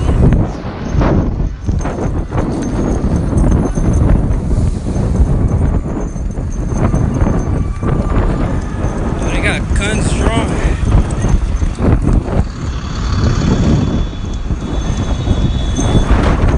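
Running footsteps slapping on the street, with a heavy rumble of wind and handling on a phone microphone carried at a run.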